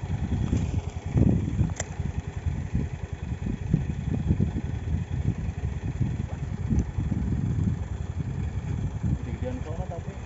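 Gusty, uneven low rumble of wind buffeting a chest-mounted phone microphone, with a single brief click about two seconds in.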